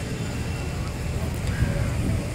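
Steady low rumble of city traffic, even throughout with no distinct events standing out.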